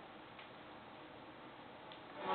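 Near silence: a faint, even hiss in a gap between speech.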